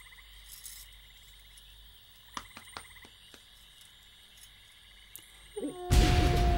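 Night-time ambience of a creature chorus: a faint, steady, high-pitched pulsing trill, with a few soft clicks in the middle. A much louder sound cuts in right at the end.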